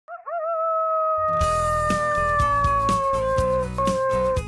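A canine howl: two short rising yips, then one long call that slides slowly down in pitch. Theme music comes in under it about a second in, with a bass line and a steady beat.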